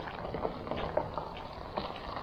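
Footsteps crunching on a gravel-and-dirt surface: a run of small, irregular crackles over a low background rumble.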